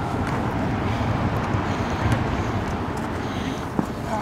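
Steady low rumble of outdoor background noise with faint distant shouts of players, and a single sharp knock near the end: a football being struck on the artificial-turf pitch.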